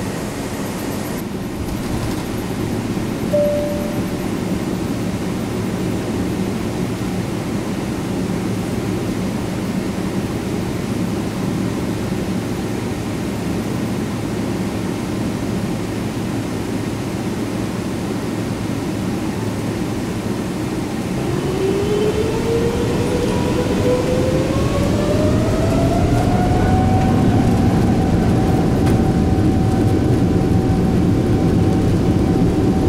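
Steady rumble and hiss inside an airliner cabin, with a brief single tone about three seconds in. About 21 seconds in the jet engines spool up for the take-off roll: a whine rises in pitch, the cabin noise grows louder, and the whine levels off near the end.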